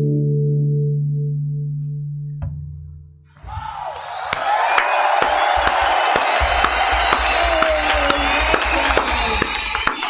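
The last acoustic guitar chord of a song rings out and fades away over about three seconds. Then applause with cheering starts up and carries on, dense clapping with whoops over it.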